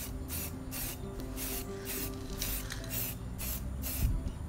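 Aerosol spray-paint can hissing in short, quick bursts, about two or three a second, as paint is sprayed on a steel engine stand.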